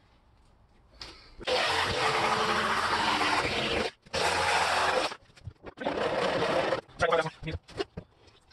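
A power tool run in several bursts against the sheet-metal van roof while trimming the fan hole to size. The longest burst lasts over two seconds and the others about a second, each starting and stopping abruptly.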